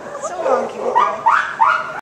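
A woman laughing in short bursts, a few times in the second half.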